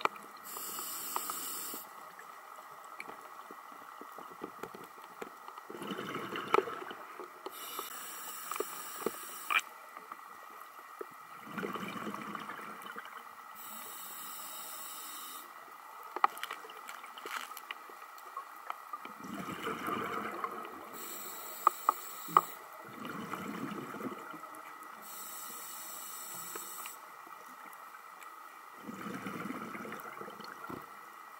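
Scuba diver breathing through a regulator underwater: a hiss on each inhale alternating with a rush of exhaled bubbles, about one breath every six seconds. Scattered sharp clicks are heard as well, two of them close together in the second half.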